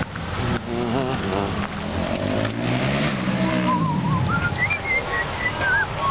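Indistinct voices talking over a steady low background rumble, with a few short, high, wavering tones in the last two seconds.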